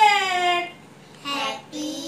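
A woman's voice making drawn-out, sing-song vocal sounds without clear words: a long note gliding down in pitch, then a short one, then one rising in pitch near the end.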